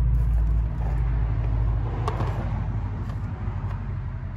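A low, steady rumble, loudest in the first two seconds and then slowly fading, with a faint click about two seconds in.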